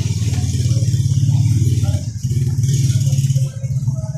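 A nearby engine running loudly with a low, rapidly pulsing hum that dips briefly about two seconds in and eases near the end.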